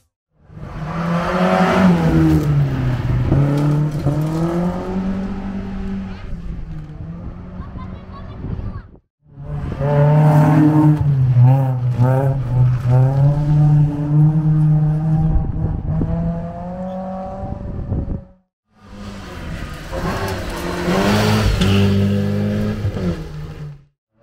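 Rally cars at speed on a gravel stage, engines revving high and falling away with gear changes as they pass. There are three separate passes, cut apart by two brief silences.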